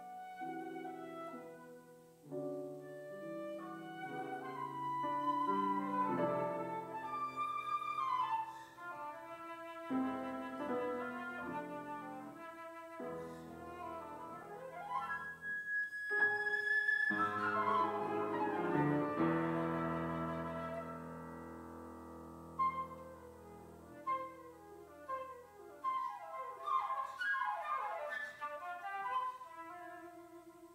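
Concert flute and grand piano playing a classical piece together, with a long held high note about halfway through and quick rising and falling runs near the end.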